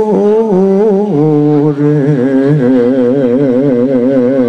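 A solo voice singing the dance's accompaniment in long held notes with a wide vibrato, stepping down to a lower note a little after a second in.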